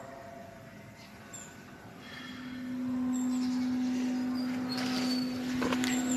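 A steady mechanical hum at one low pitch that comes in about two seconds in and holds, like a nearby engine running.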